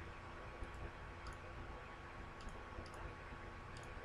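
Faint computer mouse clicks, a few scattered ones, some in quick pairs, over a steady low hum and room noise.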